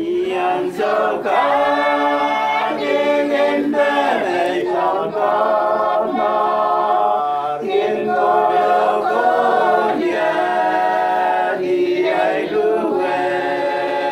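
A small group, mostly women's voices, singing a hymn together unaccompanied: slow phrases of held notes with brief breaks for breath between them.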